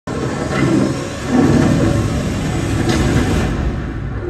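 Film soundtrack of an action scene playing loud in a cinema hall: a dense, rumbling wash of effects and score that swells about a second and a half in.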